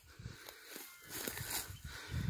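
A common (bare-nosed) wombat cropping and chewing short grass close by: a run of faint, irregular low crunches.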